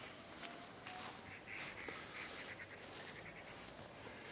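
Faint outdoor background with soft, high, repeated chirps of distant birds and a few light rustles.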